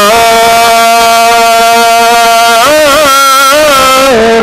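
A man's voice through a microphone, singing devotional verse: one long held note for about two and a half seconds, then a short wavering run of ornaments near the end.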